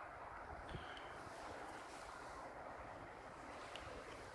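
Faint, steady outdoor background hiss, close to silence, with one soft click a little under a second in.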